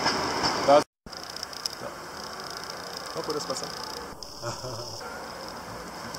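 Faint outdoor street background: a low steady noise with a thin high hiss and faint distant voices. A sudden dropout to silence about a second in marks an edit cut.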